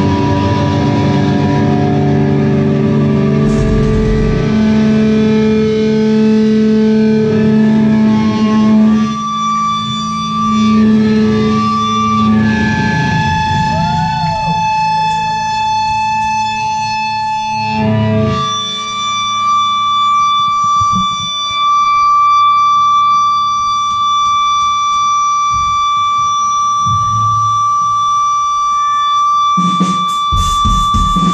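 Live band's electric guitars played through distortion and effects, holding sustained droning chords with no drumbeat. A few pitch bends come around the middle, and a steady high held tone rings through the second half.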